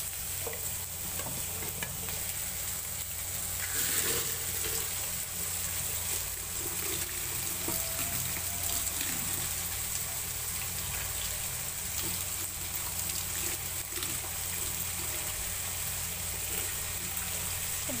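Tap water running into a plastic colander of flattened rice (chira) in a stainless-steel sink, with a hand stirring and rinsing the flakes.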